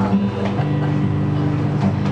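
Acoustic guitar played softly between songs, low notes ringing on, with the notes changing about half a second in.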